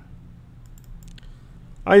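A few faint computer mouse clicks as a chart is selected, then a man starts speaking near the end.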